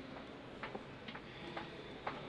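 Faint, irregular clicks and small knocks, about five or six in two seconds, from a microphone being handled over low room hiss.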